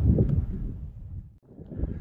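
Wind buffeting the microphone, a low rumble that fades away, drops out for a moment about three quarters of the way through, then comes back.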